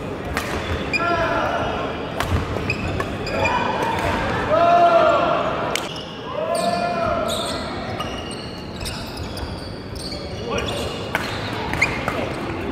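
Badminton rally: sharp cracks of rackets hitting the shuttlecock, several squeaks of court shoes on the hall floor between about one and seven seconds in, and voices in the hall.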